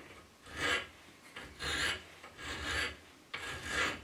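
Hand file worked across a metal piece clamped in a bench vise: four strokes, about one a second.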